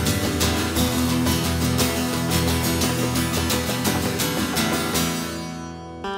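Appalachian punk band playing, with strummed acoustic guitar over a steady beat; the music dies away near the end.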